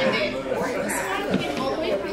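Indistinct talking and chatter of several people in a large hall, with no clear words.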